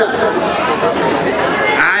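Crowd noise: many voices talking and calling out at once, with a man's amplified voice coming through near the end.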